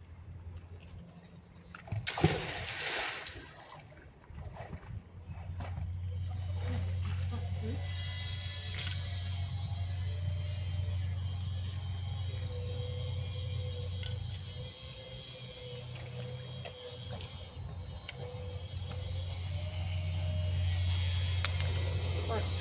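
A thrown magnet-fishing magnet hits the canal water with a loud splash about two seconds in. A steady low hum runs on through the rest.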